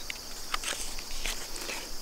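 A few short, faint rustles and taps from a picture book being handled, just after a page turn, over a steady high chorus of insects.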